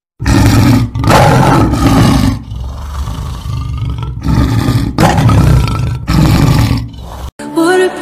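Lion roar sound effect in a logo intro: a series of loud roars with a lower rumble between them. The roars cut off suddenly about seven seconds in, and music with sustained notes starts.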